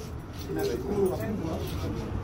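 Speech: a voice talking briefly, over a steady low rumble.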